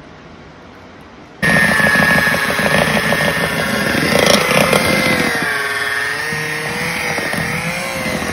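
Electric hand mixer running, its beaters whipping deer tallow, coconut oil and essential oils into body butter. After a short quiet stretch the mixer sound cuts in suddenly about a second and a half in, then runs steadily with a whine whose pitch wavers slightly.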